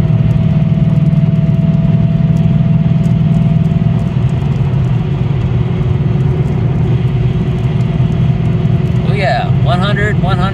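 Steady low drone of a 2014 Ford Mustang GT with its 5.0-litre Coyote V8, heard from inside the cabin while cruising at highway speed, with road and tyre noise. A man starts speaking near the end.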